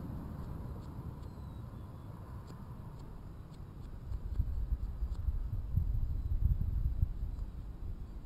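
A low, uneven rumble on the microphone, stronger in the second half, with a few faint small clicks.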